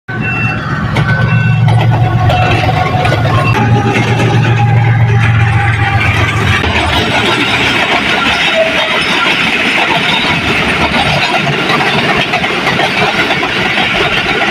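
Diesel-electric locomotive passing close, its engine a deep steady drone. From about seven seconds in, the engine sound gives way to the rushing rumble of passenger coaches rolling past on the rails.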